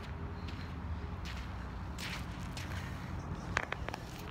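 Footsteps scuffing over sandy dirt ground as a person walks up, over a steady low rumble. Near the end come a few sharp knocks and clicks as the filming phone is picked up and handled.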